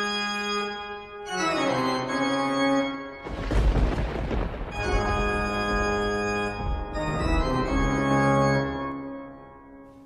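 Organ music playing slow, sustained chords that change every second or two and fade out near the end. About three seconds in, a loud rushing noise with a deep rumble sounds over the chords for over a second.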